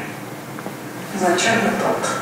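A woman's voice speaking: a pause with only a steady low background noise, then a short spoken phrase starting about a second in.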